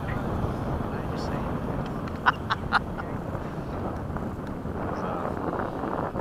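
Steady wind noise on the microphone, a low, even rush, with three brief sharp sounds a little over two seconds in.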